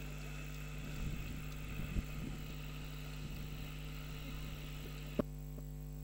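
Steady electrical mains hum from the broadcast audio equipment under faint background noise, with a sharp click about five seconds in, after which only the hum remains.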